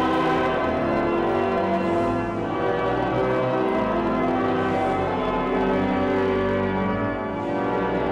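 Church bells ringing in a continuous peal, a dense wash of overlapping ringing tones at a steady loudness.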